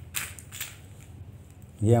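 A few short clicks and rustles in the first second from a string of plastic beads on rope being handled and pressed flat on a tiled floor. A man begins to speak near the end.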